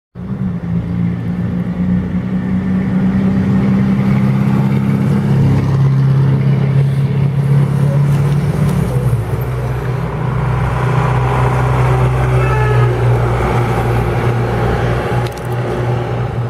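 Ford F-1000 pickup's engine running under power as the truck drives up the street, a loud low note that drops in pitch about nine seconds in.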